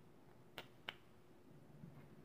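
Near silence broken by two small, sharp clicks about a third of a second apart, a little over half a second in: parts of a baitcasting reel being handled.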